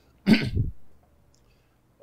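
A man's single brief nonverbal vocal sound, a short burst about a quarter second in that lasts about half a second.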